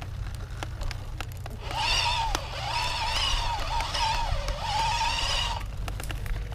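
Electric dirt bike motor whining under power for about four seconds, starting about two seconds in. Its pitch dips briefly about four and a half seconds in, then rises again. Underneath are a low rumble of tyres on the dirt trail and scattered small clicks.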